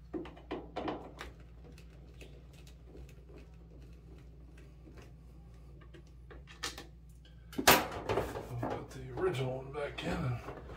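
Handling of a dryer's plastic control console: a few light clicks, then one loud knock about three quarters of the way in as the console is released, followed by clattering. A low steady hum runs underneath.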